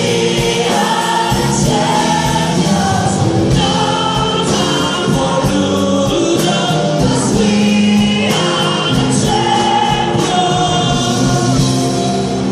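A rock band playing live with a large choir singing held notes over it, heard from within the audience in a concert hall.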